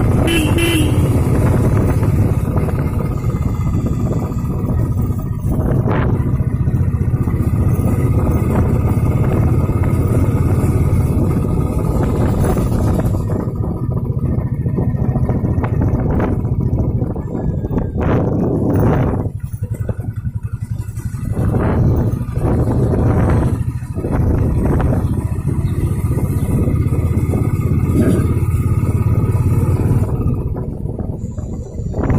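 A road vehicle's engine runs steadily on the move, a constant low drone mixed with road and wind noise. It dips for a moment about twenty seconds in and again a few seconds later.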